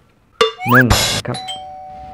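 Editing sound effect: a click, then a bell-like chime whose tone rings on steadily, laid under a short spoken phrase.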